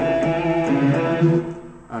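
Electric guitar playing a short phrase of single notes on the low E and A strings, the notes sustaining one into the next and fading near the end.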